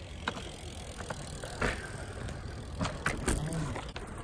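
BMX bike rolling on skatepark concrete: a steady low rumble with a few scattered sharp knocks and rattles.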